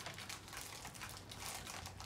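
Faint crinkling of a clear plastic packaging bag being handled.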